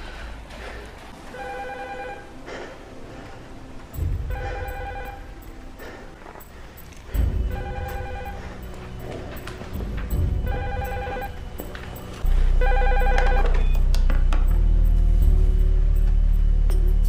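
A telephone ringing: five short trilling rings about three seconds apart. Under it, low film-score music with deep hits, turning into a louder steady low drone near the end.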